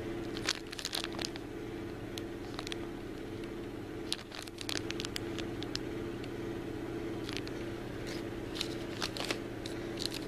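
Clear plastic packaging bag crinkling in the hands as a bagged pendant necklace is turned over, in scattered short crackles, over a steady low background hum.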